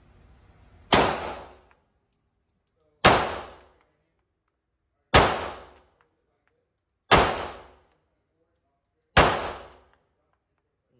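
Glock 19 Gen 5 9mm pistol fired five times in slow fire, about two seconds apart. Each shot rings out briefly in the echo of an indoor range.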